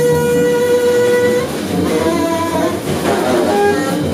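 Free-improvised jazz trio: a saxophone holds one long note that breaks off about a second and a half in, followed by shorter notes at changing pitches, over drum kit and double bass.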